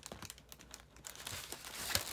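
Foil number balloons crinkling and rustling faintly as they are handled, with a louder crackle near the end.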